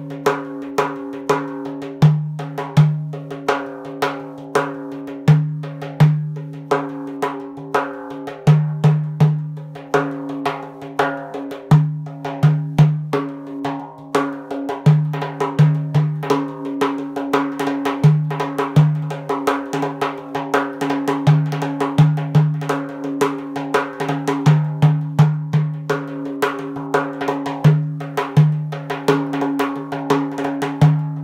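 Hand-played frame drum performing a nine-beat (9/8) Karşılama / Turkish Rom rhythm at tempo, mixing its variations on the fly. Deep ringing dum strokes in the centre of the head recur every second or two, with rapid lighter edge strokes and finger rolls filling the gaps.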